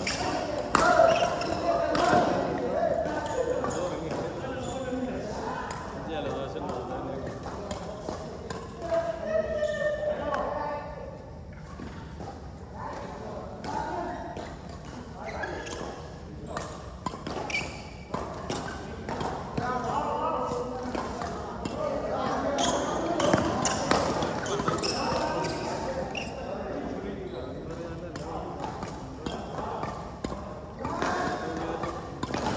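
Badminton rally: rackets striking a shuttlecock in irregular sharp clicks, with footfalls on the wooden court, echoing in a large indoor sports hall over players' voices.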